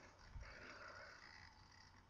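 Near silence: faint room tone and recording hiss, with one faint brief noise about half a second in.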